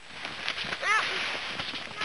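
A steady rustle of pine branches and trampled snow as children break branches, with a child's short "ja" about a second in.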